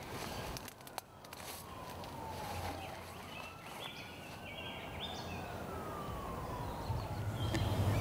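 A faint siren wailing slowly, its pitch falling, rising, then falling again over several seconds, over steady outdoor background noise.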